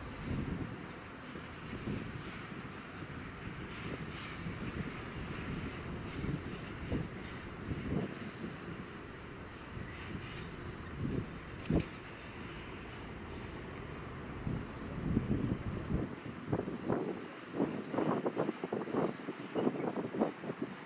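SM42 diesel shunting locomotive moving a rake of open coal wagons, a steady low rumble of engine and rolling wheels, with a sharp metallic clank about twelve seconds in. In the last few seconds there are many irregular bumps and knocks.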